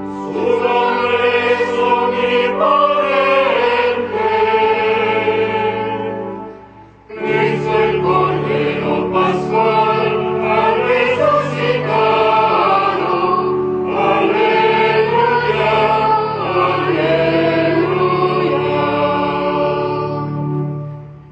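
Choir singing a hymn over steady low sustained accompaniment, with a brief break between phrases about seven seconds in.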